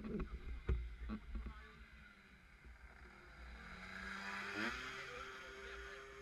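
A small two-stroke racing scooter engine running: a steady note that climbs in pitch about four and a half seconds in and then holds higher. A few sharp knocks come in the first second and a half.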